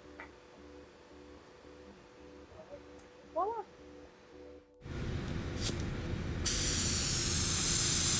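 Quiet room tone with a low hum, then about five seconds in a sudden louder rushing noise starts, and a loud steady spray-like hiss comes in about a second and a half later, the sound of the logo outro.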